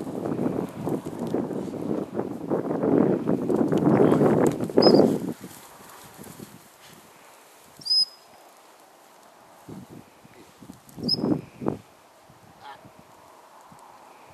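Close, loud rustling and crackling with many small knocks for about five seconds, then it drops away. After that come a few short high chirps and some soft thumps.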